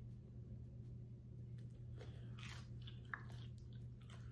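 Chewing a bite of a Korean corn dog with a crunchy crust and melted mozzarella, with a few crisp crunches of the crust about halfway through.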